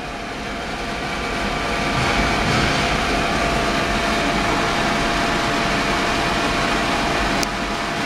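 Ultrasonic cleaning tank running with its liquid circulating: a steady hiss and hum with a faint steady tone, building up over the first couple of seconds. A sharp click near the end, after which it is a little quieter.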